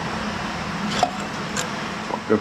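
Steady hum of a workshop fan, with two light clicks as hands work the injector timing tool on the rocker gear of a Detroit Diesel 4-71.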